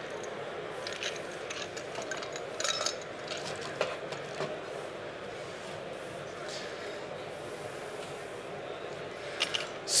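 Scattered light clinks and taps of a metal cocktail shaker and glassware being handled on a bar top, the sharpest about two and a half seconds in, over a steady murmur of voices in a busy hall.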